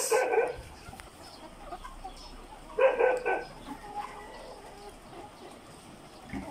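A large flock of ready-to-lay pullets calling in a poultry house, a steady bed of small clucks. Two louder short calls stand out, one right at the start and another about three seconds in.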